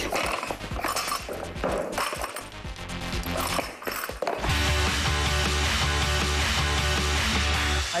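Rubber bumper plates being taken off an Olympic barbell, with scattered clanks and knocks over background music. About four and a half seconds in, a loud jingle with a heavy bass beat takes over.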